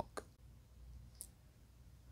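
Near silence: faint room tone with a low hum and two small clicks, one just after the start and a fainter, higher one about a second in.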